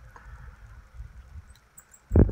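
Faint handling noise of fingers brushing the cactus chenille fibers on a hook held in a fly-tying vise, with a few small ticks near the end over a low rumble.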